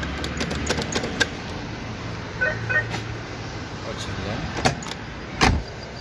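Electric window motor in a Daewoo Damas door running with a steady low hum as it moves the glass. Scattered clicks in the first second, two short high beeps about halfway, and one loud thump near the end.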